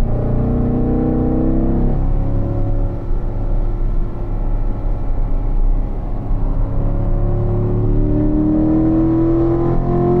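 Corvette's V8 engine accelerating hard in fourth gear, its note rising steadily as the revs climb from about 3,500 to 5,500 rpm, over steady road and tyre rumble heard from inside the cabin. The engine note is strongest in the first two seconds and again in the last three.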